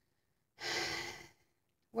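A woman's single breathy sigh, starting about half a second in and fading out in under a second.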